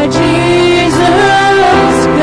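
Live worship music: a woman singing long held notes over a Kawai electric keyboard and a strummed acoustic guitar.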